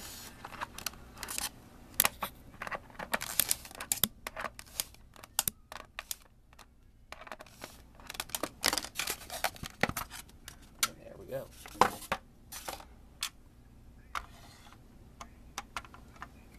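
Irregular clicks, taps and scrapes of hard plastic and small metal parts, with some rustling, as a diecast stock-car model is unscrewed and worked loose from its plastic display base.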